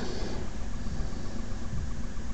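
A steady low rumble of background noise with no clear pitch or rhythm.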